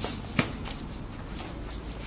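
Low background noise with one sharp click about half a second in and a few fainter ticks.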